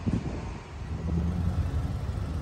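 Low rumble of a nearby vehicle engine, with a steadier hum that comes in about a second in.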